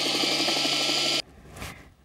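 Electric drill motor running at a steady speed, turning the rubber-band belt of a homemade Van de Graaff generator; the hum cuts off abruptly just over halfway through.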